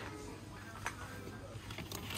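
Faint background music with a steady low hum, and a single light click about a second in.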